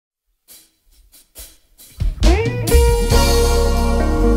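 Live band of keyboards and drum kit starting a song: a few faint taps in the first two seconds, then the full band comes in about two seconds in with held chords, bass and cymbals.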